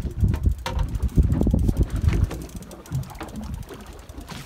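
Wind buffeting the microphone over open water, an uneven, gusty low rumble that is stronger for the first couple of seconds and eases off after.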